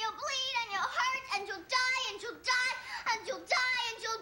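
A young girl's high-pitched, anguished cries: a run of about six or seven short wails that slide up and down in pitch, given out in distress while she is being held down.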